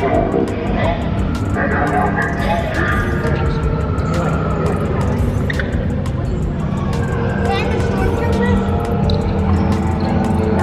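Music from the ride's sound system playing over a deep, steady rumble, with indistinct voices mixed in.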